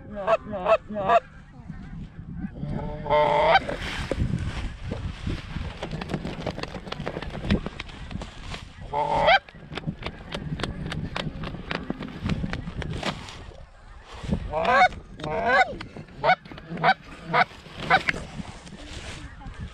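Goose honking in several loud bursts of rising and falling honks and clucks, with runs of rapid clicks between the bursts.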